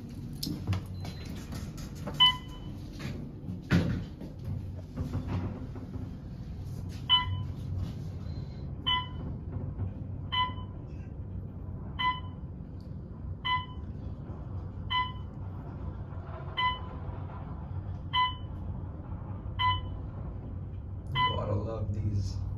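A 1967 Westinghouse traction elevator, modernized by Otis, descending: a short electronic floor-passing beep sounds once per floor, about every second and a half, over the low steady hum of the moving car. A few clicks and a knock come in the first few seconds as the car gets under way.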